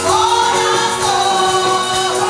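A woman singing a Spanish-language gospel chorus into a microphone over music accompaniment. Her melody rises at the start, holds a note, then steps down about a second in.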